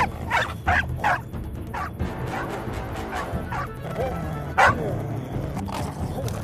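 A dog barking and yelping in sharp, separate cries, several close together in the first second or two and the loudest about four and a half seconds in, as it struggles against a catch pole. Background music plays beneath.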